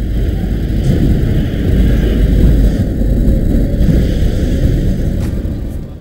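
Loud low rumble of a car on the move, road and wind noise with no clear engine note, dropping away at the very end.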